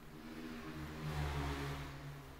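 A motor vehicle passing by: a low engine hum and rushing noise that swells to its loudest about a second and a half in, then fades.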